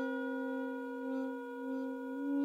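A single long musical note held at a steady pitch, with a clear series of overtones above it, sustained right through without a break.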